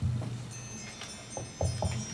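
Handheld microphone being handled: a dull bump at the start and a cluster of short knocks and thumps near the end, with faint high ringing tones underneath.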